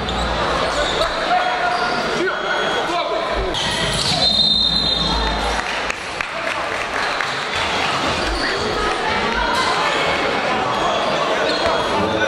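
Basketball game in a large gym: a crowd murmurs and calls out throughout while a basketball bounces on the hardwood court. A short, high whistle sounds about four seconds in.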